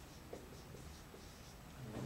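Faint strokes of a dry-erase marker writing a word on a whiteboard.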